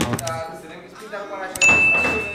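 A subscribe-button overlay sound effect: a click, then a bright bell ding about three-quarters of the way in, one steady high tone that rings on. Voices in the background.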